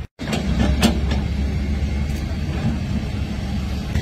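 Heavy engine running with a steady low rumble, with a few sharp knocks in the first second.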